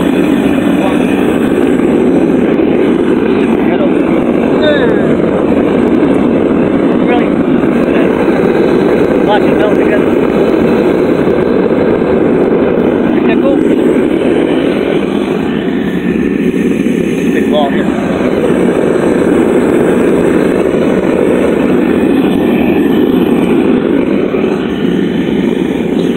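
Devil Forge propane forge burner running with a loud, steady roar like a jet engine.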